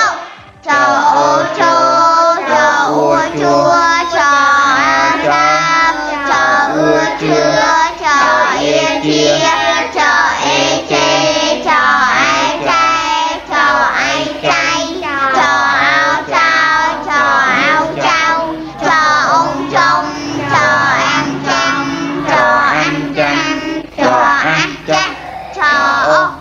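Children singing a chant of Khmer syllables built on the consonant ច (cha) combined with each vowel in turn, over a backing track with a steady bass line.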